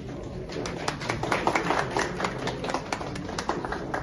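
Applause from a small group, separate hand claps audible, starting about half a second in and thinning out toward the end.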